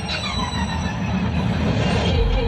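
Low rumble with a falling, whistle-like tone in the first second and a rising high sweep near the end, building slightly in loudness: the sound-effect intro to a stadium show.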